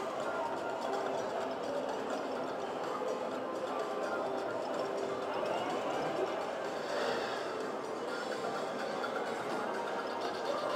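Video slot machine playing its bonus-round music and reel-spin sounds during free games, with a brief rising sweep about seven seconds in.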